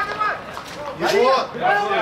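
Men's voices calling out, mostly unclear words, loudest in the second half.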